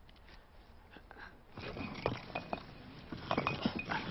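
Quiet at first, then from about one and a half seconds in a busy jumble of scuffling and rustling with many small knocks and clicks.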